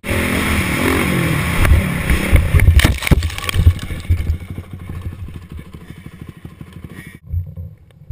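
Dirt bike engine revving hard as it accelerates, then a crash about three seconds in: several heavy impacts and clatter as bike and rider go down. Afterwards the engine keeps running, fading, until the sound cuts off abruptly near the end.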